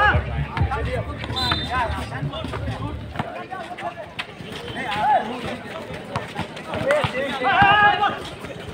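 Voices of players and onlookers calling out across an outdoor basketball court, loudest near the end. A low background-music beat runs under them for the first three seconds and then stops, and short knocks are scattered throughout.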